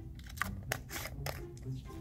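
Small plastic toy baby bottle being opened and handled: a series of short, sharp plastic clicks and taps as the snap-on cap is pulled off.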